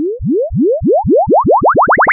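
Electronic logo sound effect: a string of short upward pitch sweeps that come faster and faster, each climbing higher than the last, building up.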